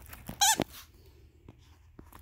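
A dog's plush squeaky toy squeaked once as the dog bites down on it: a single short, wavering squeak about half a second in.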